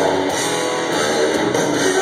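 Metal band playing live with electric guitars to the fore, loud and steady, picked up by a phone's microphone in the crowd.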